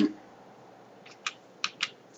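Four quick, light clicks of computer keys, pressed about a second in to page through presentation slides.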